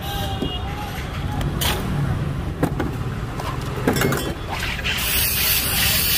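Street-stall chatter and a few clinks, then about five seconds in a sudden loud hiss as a soda machine's filling nozzle charges a chilled glass bottle with carbonated water and gas.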